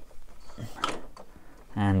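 Hard plastic toy parts being handled, with a few light clicks and scrapes a little under a second in as a 3D-printed trailer piece is slid and pressed into place.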